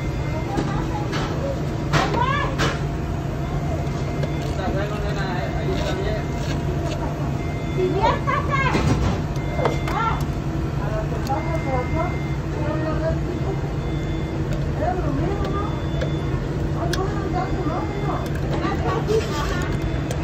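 Indistinct voices talking in the background over a steady low machine hum.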